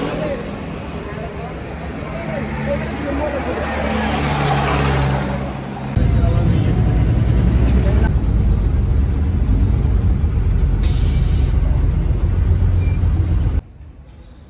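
Street traffic at a bus stop, then the loud low rumble of a city bus's engine and road noise heard from inside the moving bus. The rumble cuts off suddenly near the end.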